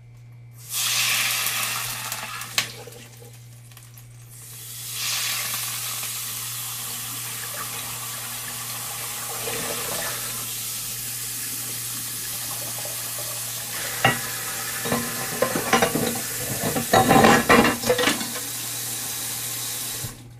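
Food sizzling in a hot frying pan: a loud hiss starts suddenly, dies away after a few seconds, then builds again and runs steadily. Several sharp clinks of dishes and utensils come near the end.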